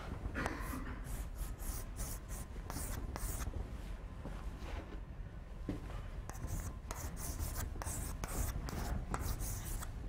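Chalk scraping on a blackboard in a quick run of short strokes as a simple line drawing is sketched.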